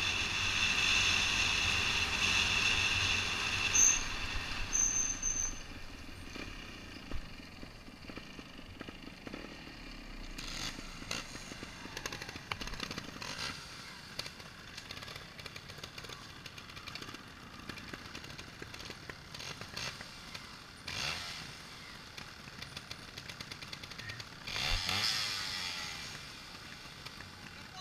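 Trials motorcycle engine running under the rider as the bike rolls down a gravel track, with wind and gravel noise, loud for the first few seconds. Then quieter, with short irregular blips of trial-bike throttle and a rising rev near the end.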